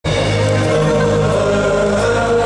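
Live band music with voices singing long held notes, heard from among the concert audience.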